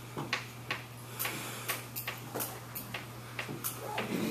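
Irregular sharp clicks and taps, two or three a second, over a steady low hum.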